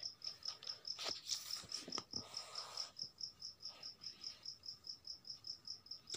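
A cricket chirping steadily in the background, about five short high chirps a second. Paper rustles and slides a few times in the first half as the pages of a book are handled.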